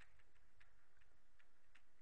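Faint light ticks of a stylus on a tablet screen while a word is handwritten, several small taps a second over a low steady hum.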